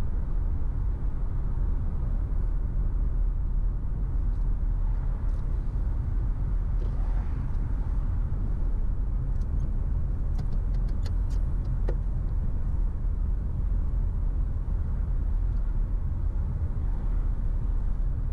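Car driving along a town street: steady low engine and road rumble. A short run of light clicks comes about ten to twelve seconds in.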